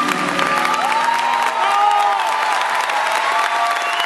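Audience applauding and cheering with scattered shouts, right as the final flute note of the waltz stops.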